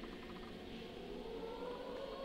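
Choral singing, softly holding sustained notes.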